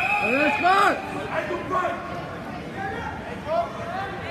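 A referee's whistle, one long steady blast, ends about a second in as the backstroke starters wait at the wall, over a crowd of swimmers and spectators shouting and calling across the pool hall.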